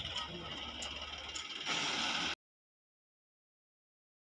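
JCB 3DX backhoe loader's diesel engine running steadily. A louder hiss comes in just under two seconds in, and then the sound cuts off abruptly to silence.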